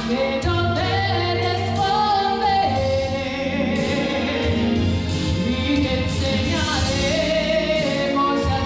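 A woman singing a gospel song into a microphone, her voice holding and gliding between long notes over sustained chords and a steady bass accompaniment.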